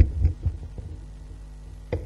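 A few low bumps in the first half second, typical of a handheld camera being handled, then a steady low hum, with one sharp click near the end.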